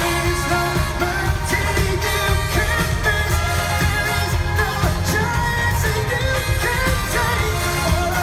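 Live pop band playing with men singing lead vocals, over heavy bass and drums.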